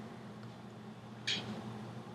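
Quiet room tone with a faint steady low hum, and one brief soft hiss a little over a second in.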